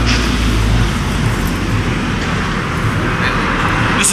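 Road traffic: a low vehicle rumble that fades out about a second in, under a steady rushing noise of passing cars.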